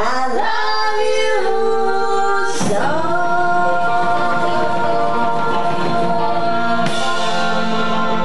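Live band playing a song, with a woman's lead vocal singing long held notes, some slid into from below.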